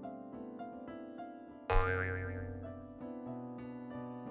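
Soft keyboard background music with sustained notes. Just under two seconds in, a sudden sound effect with a wobbling pitch cuts in over the music and fades away over about a second.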